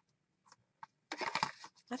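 Fabric and ribbon rustling as they are handled and smoothed on a cutting mat: two faint ticks, then a short, irregular rustle about a second in.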